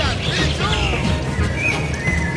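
Background music with a steady low beat. In the first second it carries a wavering call that rises and falls in pitch several times.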